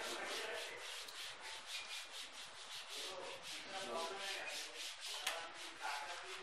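Chalkboard being erased with a hand-held duster: quick back-and-forth rubbing strokes, about five a second, with a single sharp tick about five seconds in.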